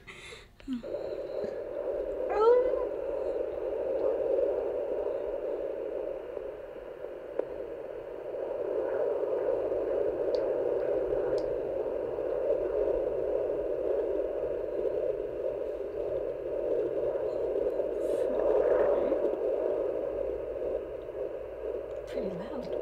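Pocket fetal Doppler's loudspeaker giving a steady whooshing hiss as its probe is moved over a pregnant belly, searching for the heartbeat, with a short rising squeak about two and a half seconds in. The pulse it picks up is fast, which the operator thinks could be the mother's own.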